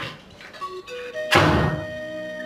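Soft background music of held, steady notes comes in. A single dull thump lands about one and a half seconds in.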